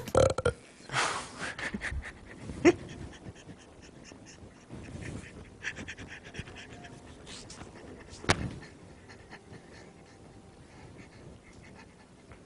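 A man's stifled laughter: short breathy, panting bursts of laughing held back behind a hand, with a couple of brief louder squeaks of laughter.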